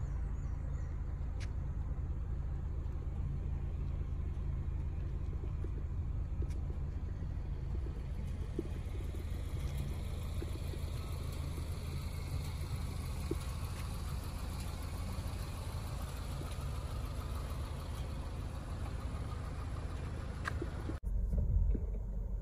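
Steady low rumble of a car's engine and tyres, heard from inside the cabin while driving along a paved road, a little louder near the end.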